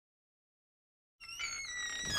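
Silence for just over a second, then the channel's intro sound fades in: a faint tone with a slowly falling pitch, growing louder toward the end.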